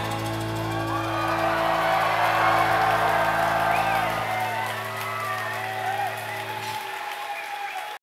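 A rock band's final chord ringing out through the amplifiers, its low notes cutting off about four seconds in and the last near seven seconds, while a club crowd cheers, whoops and claps.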